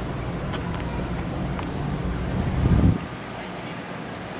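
An engine running steadily with a low hum over outdoor crowd ambience. A louder low rumble swells up toward three seconds in and cuts off abruptly, leaving a quieter background.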